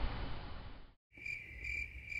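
A steady hiss fades out over the first second, then stops suddenly. After a brief gap a cricket starts chirping: a high, steady trill pulsing a little over twice a second.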